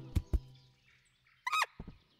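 Two light taps, then about one and a half seconds in a brief squeak from the animated chinchilla, its pitch wavering quickly up and down.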